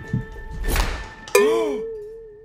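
A short whoosh, then a hard thunk about a second and a half in that leaves a ringing tone, wavering and slowly fading.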